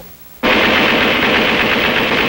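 Machine-gun fire: one long, continuous burst that starts suddenly about half a second in and runs on without a break.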